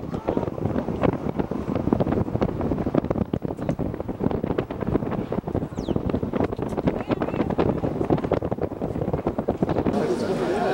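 Wind buffeting the camera's microphone: continuous low, gusty noise with many brief pops.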